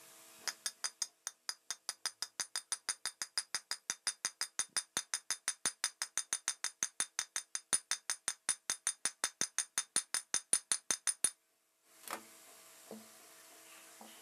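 A small hammer tapping quickly and steadily on a ball bearing in a ceiling fan's cast metal end cover, sharp ringing metal taps about five or six a second, seating the bearing in its housing. The tapping stops abruptly near the end, followed by a single knock.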